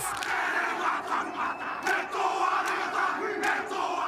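The All Blacks rugby team performing the haka: many men shouting the Māori war chant together, with stadium crowd noise, as a dense steady wall of voices.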